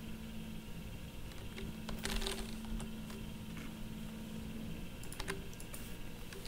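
Computer keyboard keys pressed a few times: scattered short clicks, with a cluster about two seconds in and a few more near the end, over a low steady hum.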